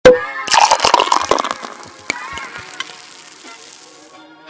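Sound effects of an animated ink-splatter intro: a sharp hit with a brief ringing tone, then a dense burst of crackling splatter clicks that fades out over about two seconds, with music coming in under it.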